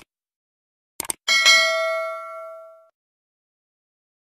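Subscribe-button animation sound effect: a mouse click, then two quick clicks about a second in. A notification bell ding follows and rings out for about a second and a half.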